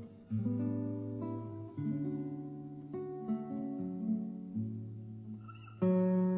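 Background music: an acoustic guitar plays slow, ringing plucked notes and chords in a gentle ballad, with a louder chord struck near the end.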